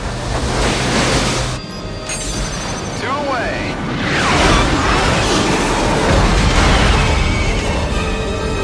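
Film sound effects of fighter jets firing a salvo of missiles over orchestral music: a dense rush of jet and rocket noise with booms, growing louder about halfway through.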